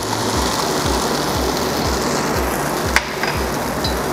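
Chicken longanisa sausages frying in hot oil in a nonstick pan: a steady sizzling hiss as the freshly added oil heats up. Background music with a low, regular beat runs underneath, and there is a single click about three seconds in.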